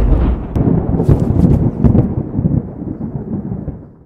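Outro sound effect: a deep, loud rumble following a heavy boom, with a few crackles in it, rolling on and fading out near the end.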